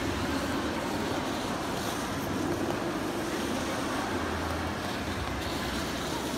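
Steady background noise of a busy indoor ice rink: skates running on the ice under a general hall din.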